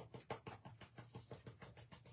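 Faint, rapid light tapping, about seven taps a second and growing fainter, as a paper napkin soaked in liquid wax is tapped down flat onto a painted wooden cutout for decoupage.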